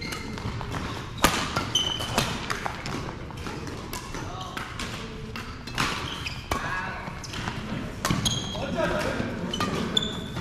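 Badminton rackets striking a shuttlecock in a fast doubles rally: a run of sharp hits, the loudest about a second in, with sneakers squeaking on the court floor in between.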